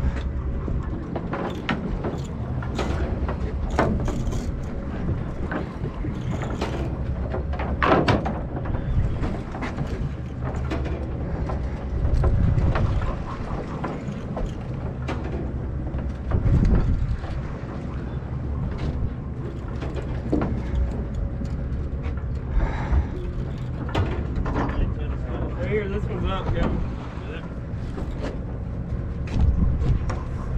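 Boat's engine humming steadily, with scattered knocks and clunks on deck and voices in the background.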